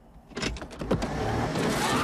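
Film soundtrack car sound: a few sharp clicks about half a second in, then a rushing vehicle noise that grows steadily louder.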